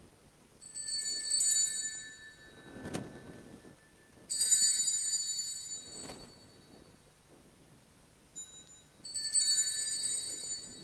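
Altar (sanctus) bells rung three times, each ring a bright cluster of bell tones that dies away. They mark the consecration of the host: the priest's genuflection, the elevation, and the second genuflection. A soft knock falls between the first two rings.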